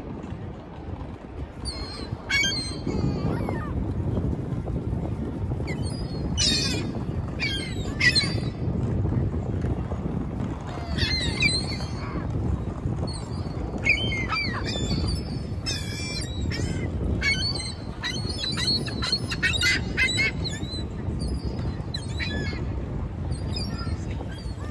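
A flock of gulls calling: many short, harsh squawks and cries from several birds, coming thickly through most of the stretch and thinning near the end, over a steady low rush of background noise.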